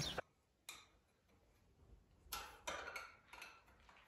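Mostly near silence, broken by a few faint, brief metallic clicks and light clinks: one just under a second in, and a short cluster in the second half.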